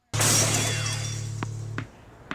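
Dramatic sound effect: a sudden glass-shattering crash over a low held tone, fading over about a second and a half and then cutting off abruptly.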